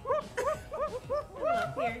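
A rapid run of short, high-pitched yelping calls, about five or six a second, each rising and falling in pitch, becoming denser and overlapping near the end.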